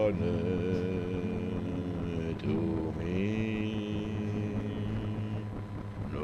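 A man's voice singing long, drawn-out notes without clear words, over a steady low acoustic guitar accompaniment. Near the middle the voice slides up to a second long held note.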